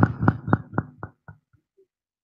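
Sharp knocks through the public-address system's echo effect, repeating about four times a second and fading away within about a second and a half.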